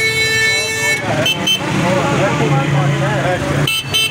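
A vehicle horn held for about a second at the start, over a steady low engine rumble and people talking nearby, with a few short high beeps later on.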